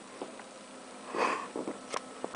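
A short, breathy sniff of air close to the microphone a little past a second in, followed by a couple of shorter puffs and small clicks.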